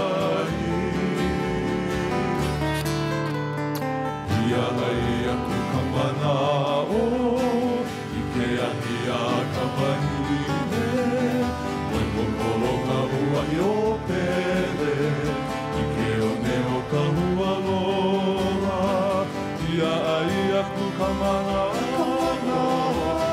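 A Hawaiian string band playing live: acoustic guitar, ukuleles and upright bass, with men's voices singing.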